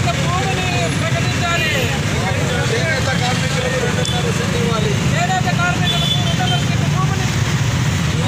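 A crowd of men's voices shouting together over a loud, steady low rumble.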